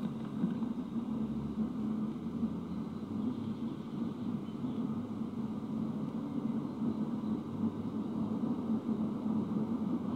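Low, steady background rumble with no speech.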